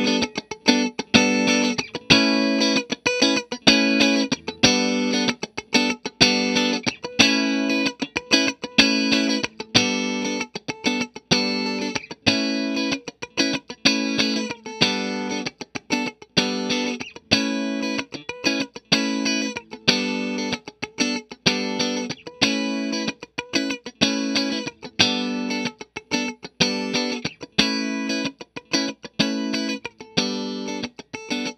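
Stratocaster-style electric guitar strumming the same short chord rhythm over and over through a Bondi Effects Squish As compressor pedal, each stroke with a sharp, punchy attack. The pedal's blend knob is slowly turned during the playing, changing the mix of dry and compressed signal.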